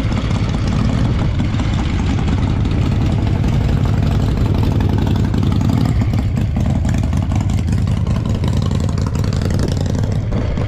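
A loud engine idling steadily.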